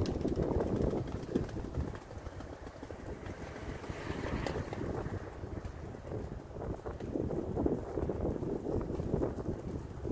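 Wind buffeting the microphone in irregular gusts that swell and ease, heaviest in the first couple of seconds and again in the last few.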